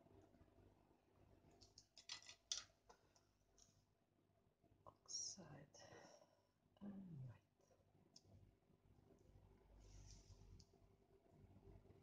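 Near silence, with a few faint sharp clicks about two seconds in and a brief, low murmur from a person's voice, falling in pitch, around the middle.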